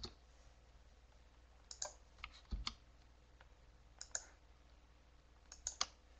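Faint, scattered clicks of computer keys, in a few short clusters.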